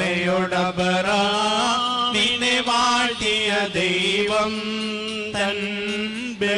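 Male clergy chanting a liturgical hymn in unison in Malayalam, over a steady low held note.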